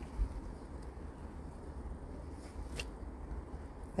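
Quiet low background rumble, with a soft bump just after the start and a faint click about three seconds in.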